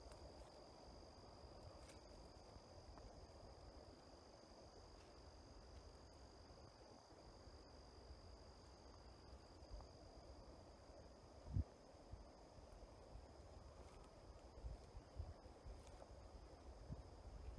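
Faint, steady, high-pitched insect drone, typical of crickets, over a low rumble of wind or handling noise on the microphone. A single short thump comes about three quarters of the way through, with a few softer bumps near the end.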